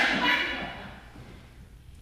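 A loud burst of human voices that fades out within about a second, leaving low room noise.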